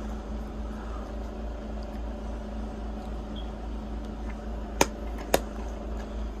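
A plastic DVD case clicks twice near the end as it is handled and snapped shut, over a steady mechanical hum in the room.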